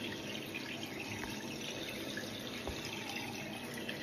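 Water running steadily in a small tiled bathroom.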